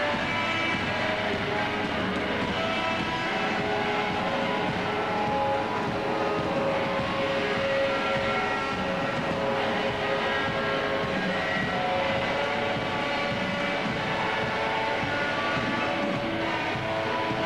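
Live experimental band music: a dense, steady drone of many held tones that shift slowly in pitch over a low rumble, with no clear beat.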